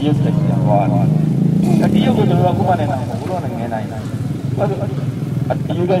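A man's voice speaking continuously into a microphone and carried over horn loudspeakers.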